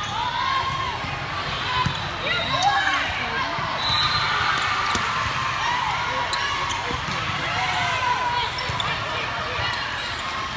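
Indoor volleyball play on a hardwood gym floor: voices calling out and chattering, sneakers squeaking in short glides, and a few sharp slaps of the ball.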